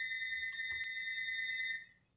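A steady high-pitched electronic tone, like a long beep with overtones, held without wavering and cut off suddenly just before the end. A faint click sounds partway through.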